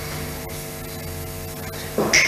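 Steady electrical mains hum with a stack of even overtones over a faint static hiss.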